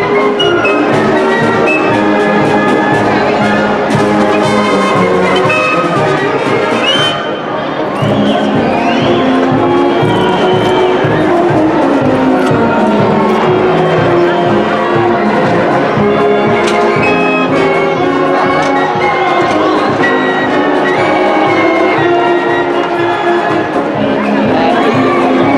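Concert band playing a circus march live, brass and woodwinds over a steady drum beat.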